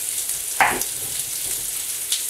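Bone-in ribeye steak sizzling on an indoor stovetop grill, a steady hiss. About half a second in there is one short, sharp sound that falls in pitch.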